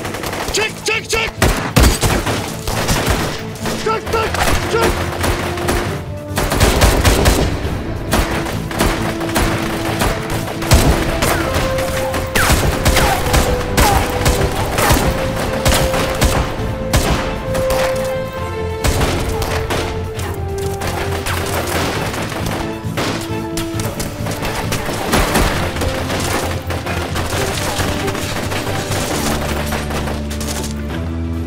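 A sustained exchange of rapid automatic rifle fire, with many shots in quick succession, densest in the first half. A dramatic film score runs underneath and comes more to the fore as the shooting thins out toward the end.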